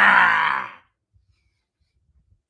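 A man's long, loud "ahh" yell, sliding down in pitch and fading out under a second in: a comic vocal impression of a person falling.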